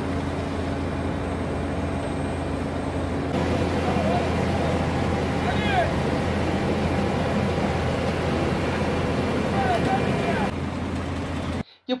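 Diesel engines of road-paving machinery running steadily at work: a skid-steer loader, then an asphalt paver laying hot asphalt. The sound changes abruptly about three seconds in and again near the end. A few short, faint voice-like calls come through in the middle and near the end.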